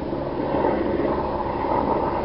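Steady outdoor background noise, a continuous low rush and hiss with no clear event in it.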